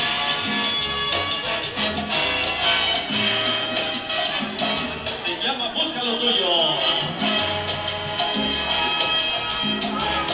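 Salsa music played loud over a dance-hall sound system, with a repeating bass line and a voice over the band.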